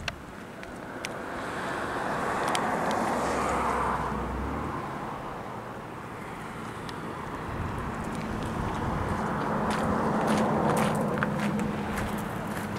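Passing road traffic: a rushing noise that swells about three seconds in, fades, and swells again near the end, with a low engine hum under it toward the end.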